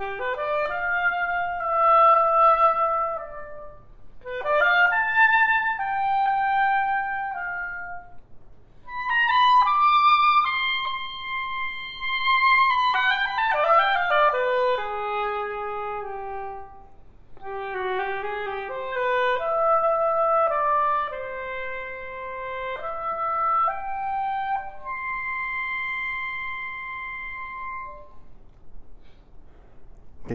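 Solo oboe played by a student: a slow melody of sustained notes in several phrases with short breaths between them, ending on a long held note near the end.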